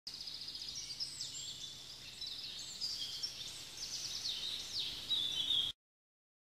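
Birdsong: a busy run of high chirps, trills and quick downward-sweeping notes over a faint low hum, cutting off abruptly near the end.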